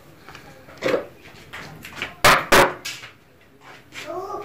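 Two loud, sharp knocks about a third of a second apart, a little past halfway, with a fainter knock about a second in.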